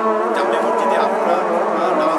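A man's voice speaking steadily, with no other sound standing out.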